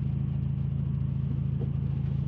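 Lamborghini Huracan LP580-2's 5.2-litre V10 idling steadily, heard from inside the cabin as an even low hum.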